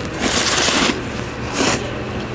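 A person slurping jjamppong noodles: a long slurp, then a short one a second later.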